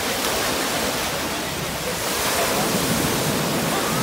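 Ocean surf breaking and washing up a sandy beach: a steady, dense rush of foaming water around waders' legs.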